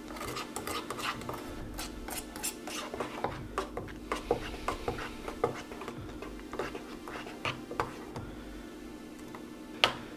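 Plastic spoon stirring a thick, clumpy chocolate protein drink in a metal canteen cup, with repeated scrapes and light clicks against the cup's sides, over a steady low hum.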